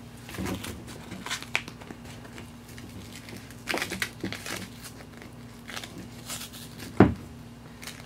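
Elastic compression bandage fabric rustling and rubbing in scattered soft handling sounds as it is wrapped around a training manikin's leg, with one sharp knock about seven seconds in.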